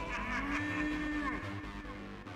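Acid techno track in a DJ mix: a regular low kick-drum pulse under pitched synth or sampled tones that slide up, hold and fall away.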